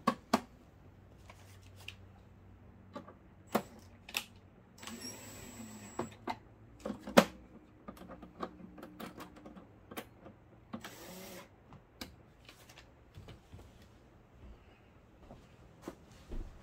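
Scattered sharp clicks and knocks from hands working at the back of a large DLP projector, likely connecting it up to be powered on, the loudest about seven seconds in. Two short bursts of hiss come around five and eleven seconds in, over a faint low hum.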